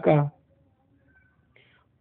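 A man's voice finishing a word in a Hindi lecture, then a pause of near silence for about a second and a half, with a faint brief sound shortly before he speaks again.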